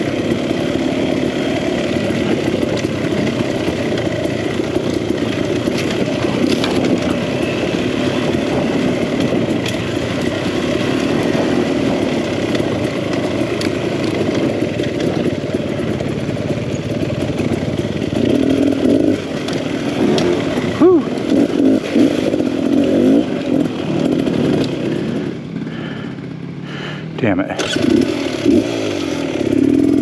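2022 Beta Xtrainer two-stroke dirt bike engine running under constantly changing throttle on rough singletrack, with the revs rising and falling. Late on, the engine drops back to a lower, quieter pull for a couple of seconds before it picks up again.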